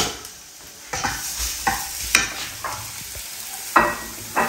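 Chopped garlic and green chillies frying in oil in a stainless steel pan, sizzling, while a wooden spatula stirs and scrapes them around the pan. The sizzle picks up about a second in, with several short spatula strokes over it.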